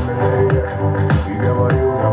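A song with a heavy bass beat, about two beats a second, played loud through a JBL Flip 5 portable Bluetooth speaker at 60% volume in a bass test.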